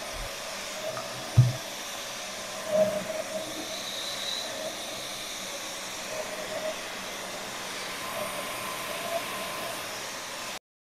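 Dyson cordless stick vacuum running steadily with a small nozzle, cleaning up a mess on a table mat. A single thump sounds about a second and a half in, with a smaller knock a little later.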